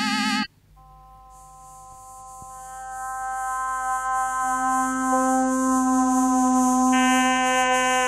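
Early electronic tape music of steady synthetic tones. A chord of warbling tones cuts off about half a second in. After a brief hush, steady pure tones enter one after another and stack into a sustained chord that slowly swells in loudness.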